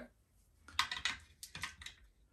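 A quick run of light clicks and taps as small board-game pieces are handled on a tabletop, over about a second.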